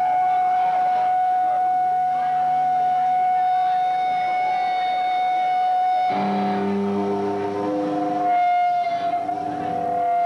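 Electric guitar feedback: one steady high tone held through the amplifier. About six seconds in, lower guitar notes start being picked beneath it, and the held tone wavers near the end.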